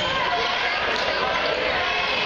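A basketball bouncing on a hardwood gym floor under a steady hubbub of shouting voices from players and spectators.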